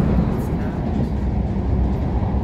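Passenger train running at speed, a steady low rumble of the wheels and running gear heard from inside the carriage.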